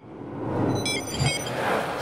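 Channel logo sting: a swelling whoosh with a few short, high electronic blips about a second in and a low hit just after.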